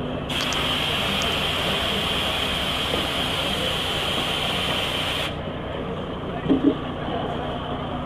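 Compressed air hissing steadily from a coach's air system for about five seconds, starting and stopping abruptly, over the low, steady idle of the coach's engine.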